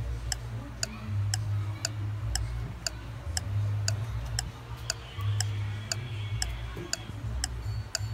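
Clock ticking sound effect, about two and a half ticks a second, over a low bass tone that pulses on and off.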